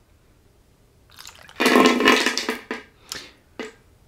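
Water poured from a plastic bottle into a silicone funnel: a splashing pour starts about a second and a half in and lasts about a second, followed by a few short splashes or drips.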